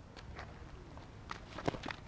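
Faint footsteps and scuffs on a dirt softball infield, a few soft clicks over a low outdoor background.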